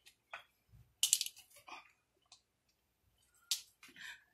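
Potato chunks and sliced onions being dropped by hand into a pot of broth: a handful of short, separate plops and knocks, the sharpest about a second in and another near the end.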